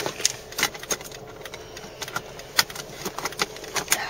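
A run of irregular light clicks and taps, a few a second, with no steady rhythm.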